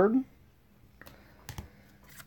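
A few faint, sharp clicks and taps of rigid plastic toploader card holders being handled, spaced about half a second apart.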